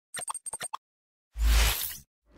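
Animated-intro sound effects: a quick run of about five short bubbly pops, then, after a short gap, a whoosh with a deep boom that fades out.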